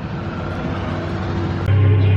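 Steady street traffic noise, cut off abruptly near the end by a loud, steady low drone of background music.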